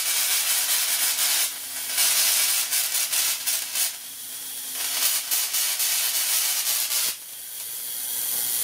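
Spark gap of a Lakhovsky Multiple Wave Oscillator firing continuously at full power: a sizzling, crackling hiss that swells and eases every second or two, over a faint steady hum.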